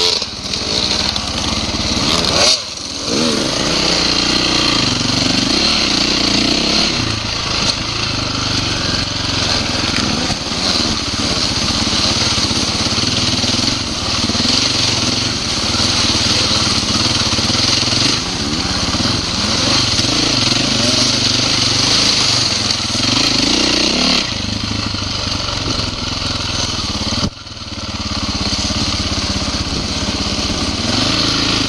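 Dirt bike engine running under throttle on a trail ride, its pitch rising and falling as the rider works the throttle. The throttle briefly closes twice, once a few seconds in and once near the end.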